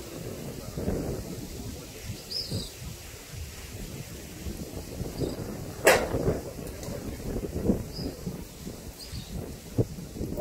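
Irregular low rumble of wind and handling on the phone's microphone, with one sharp crack about six seconds in and a few faint, short high bird chirps.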